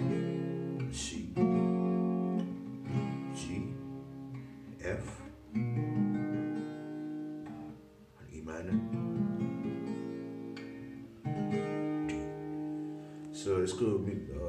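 Acoustic guitar with a capo on the sixth fret, chords strummed and left to ring, a fresh strum every couple of seconds, with a short lull about eight seconds in.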